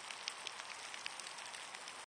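Shower head spraying water: a steady faint hiss with many scattered ticks of falling drops, like light rain.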